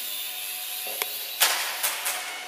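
Micro E-flite 4-Site RC airplane's small electric motor and propeller whining steadily, then a click and a couple of loud sharp bursts of noise in the second half as the plane comes down onto the hard floor.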